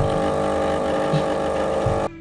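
Automatic espresso machine's pump humming steadily while coffee pours from its spouts into a mug.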